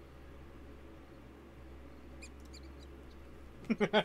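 A quick run of short, high-pitched cartoon squeaks from a stock squeak sound effect in the show's soundtrack, faint over a low hum, followed near the end by a man laughing.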